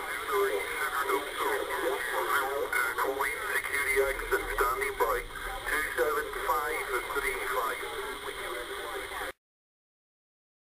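Voice received over single-sideband on an HR 2510 transceiver tuned to 27.555 MHz USB: narrow, hissy radio speech that is hard to make out. It cuts off abruptly about a second before the end.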